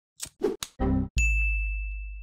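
Outro logo sting sound effect: a run of short swishes and hits, then a little past a second in one hard hit that leaves a high ringing ding over a deep boom, both fading slowly.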